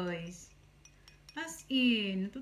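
A small spoon clinking lightly a few times against a ceramic bowl as it stirs a thick paste, between stretches of a woman humming.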